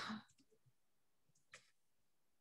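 A spoken word trails off, then near silence with a single faint click about one and a half seconds in.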